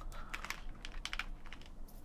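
Plastic drink bottle being handled and its cap twisted open: a quick, quiet run of small clicks and crackles.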